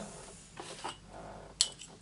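Soft handling sounds as a metal ruler and a fine pen are picked up and set on the craft mat, with one sharp click about one and a half seconds in.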